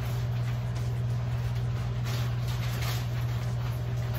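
Bathroom exhaust fan running: a steady low hum with a hiss over it. Light rustling of a plastic shower curtain being handled comes over the hum.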